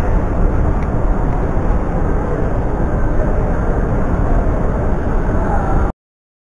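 Steady, loud low rumbling noise of a handheld camera being carried and swung about, over the general hubbub of an airport terminal; it cuts off suddenly near the end.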